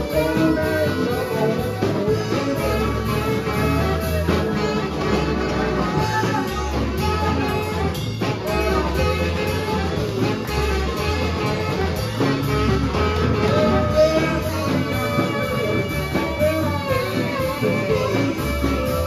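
Live band playing a slow blues instrumental passage: a saxophone solo over electric guitar, electric bass, drums and keyboard, at a steady loud level.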